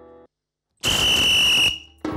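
Music stops abruptly just after the start; after a short silence a loud buzzer sounds for under a second, a steady high tone over a harsh rasp.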